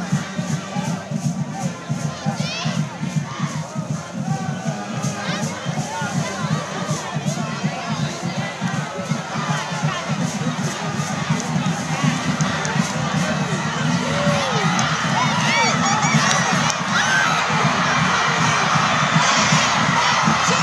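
Crowd and cheerleaders at a football game cheering and shouting, with a steady rhythmic beat of about two or three strokes a second through the first half. The shouting grows louder over the last few seconds.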